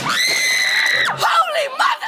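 A person screaming: one loud, high-pitched scream held steady for about a second, which then breaks off into shorter voice sounds.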